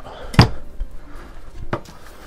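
Two knocks from handling at a heat press platen, with a sharp one about half a second in and a fainter one near the end, and light handling noise between them.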